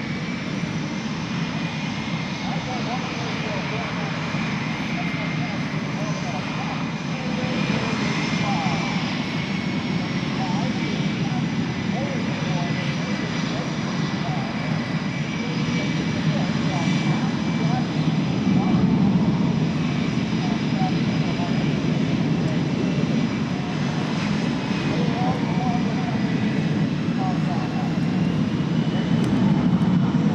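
Boeing F/A-18 Super Hornet jets taxiing at low power, their twin General Electric F414 turbofans giving a steady high whine over a low rumble. The sound swells somewhat as the jets roll past.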